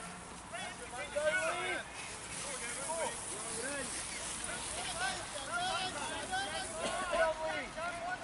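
Several voices calling out at a distance, overlapping, over a steady outdoor hiss.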